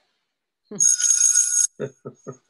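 Bright, bell-like ringing chime lasting just under a second, starting about a second in after a silence and cutting off abruptly.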